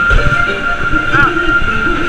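Big Thunder Mountain Railroad's mine-train roller coaster running on its track: a steady high wheel-on-rail whine over a rumbling clatter.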